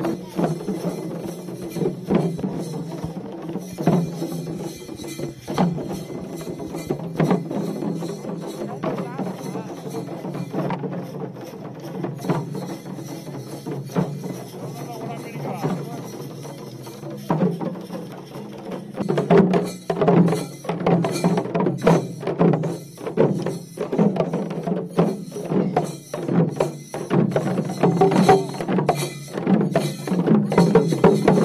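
A group of parai frame drums played with sticks in a fast, steady rhythm of many strokes. The playing grows louder in the last third.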